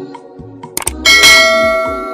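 Subscribe-button sound effect: two quick mouse clicks, then a notification bell dings about a second in and rings out, fading slowly, over background music.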